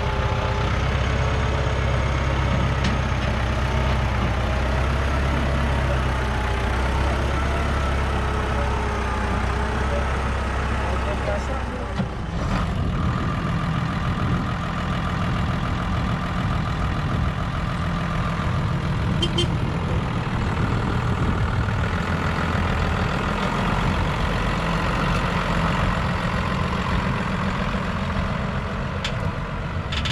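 Diesel farm tractor engines running steadily. About 12 s in the sound changes abruptly to a denser, rougher rumble: a New Holland M135 tractor pulling a loaded silage trailer.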